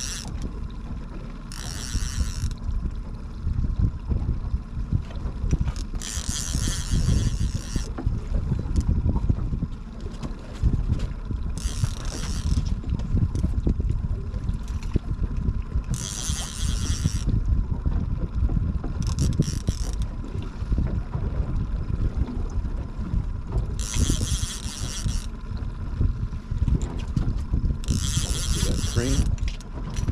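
Fishing reel working in short bursts of about a second, several times at irregular intervals, as an angler fights a hooked fish. Under it runs a steady low rumble of wind and water noise on the open ocean.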